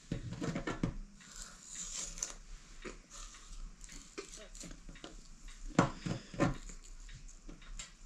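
Hand-held plastic spiral potato cutter being pressed and twisted into a potato on a metal skewer: irregular scraping and small clicks as the blade cuts, with two louder knocks about six seconds in.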